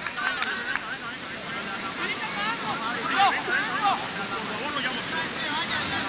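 Scattered shouts and calls from players and onlookers, heard from a distance and overlapping, over a steady background hiss. There are a few faint clicks in the first second.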